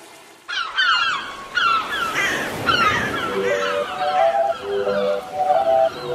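Bird calls in a song's intro, a run of short falling chirps repeated several times over a hiss of noise, starting about half a second in. About three seconds in, a synth melody of short stepped notes enters beneath them.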